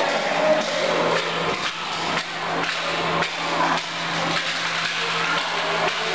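TAIMES large-format solvent inkjet printer running: a steady hum under irregular knocks and clacks.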